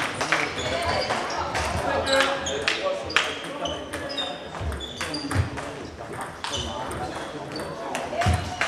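Table tennis balls clicking off bats and table tops in quick, irregular rallies, with more clicks coming from other tables in play in the hall. Indistinct voices are heard underneath.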